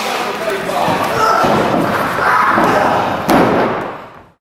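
Thuds of wrestlers' bodies against a wrestling ring's ropes and mat, with one sharp, loud thud about three seconds in; the sound then fades out.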